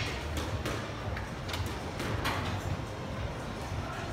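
A squash rally: sharp smacks of the ball off racket strings and the court walls, about five in the first two and a half seconds, with a low rumble underneath.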